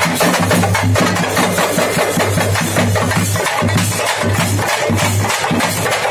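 A street drum band playing fast, dense, continuous beats on a large rope-tensioned barrel drum and smaller hand drums, over a low steady hum.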